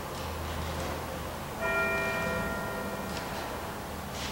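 Church bell struck once about one and a half seconds in, its ringing tones fading slowly, with the ring of an earlier stroke dying away before it: the bell rung at the elevation of the chalice after the words of consecration.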